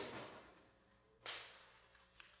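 A person coughing twice, about a second and a quarter apart, the first cough the louder, each trailing off in the hall's reverberation.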